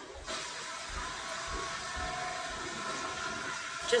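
A toilet flushing: water rushing steadily, with a few soft low thumps underneath.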